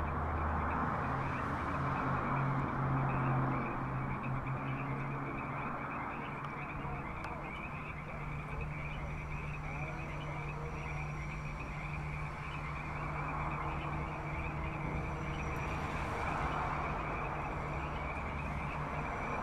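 Movie-trailer soundtrack playing through a tinny drive-in window speaker: thin and hissy with no high end, over a low steady hum.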